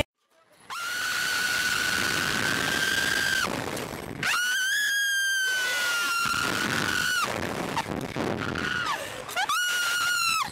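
Riders on a Slingshot reverse-bungee ride screaming as they are launched, over rushing wind noise. After a brief silence comes one long, high, steady scream, a second long scream around the middle, and shorter shrieks near the end.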